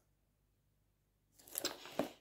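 Near silence for most of the moment, then a brief soft crackling rustle about a second and a half in.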